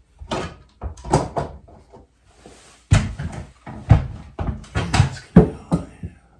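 An irregular run of knocks and clunks from hand-handling parts and bumping them against a wooden board wall, some louder than others, with no motor or tool running.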